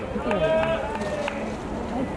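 Voices calling out, one call held briefly about half a second in, with a few faint clicks.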